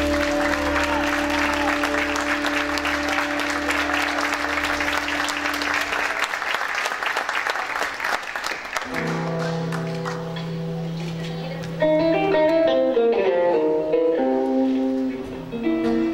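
A live band's last chord is held and dies away under audience applause. Then, about nine seconds in, a guitar starts playing single notes and short melodic runs.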